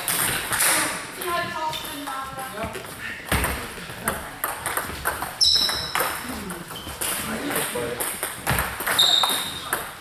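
Table tennis balls clicking off paddles and bouncing on tables in a rally, a quick run of sharp ticks with more ball hits from neighbouring tables mixed in. The hall gives them an echo, and voices talk underneath.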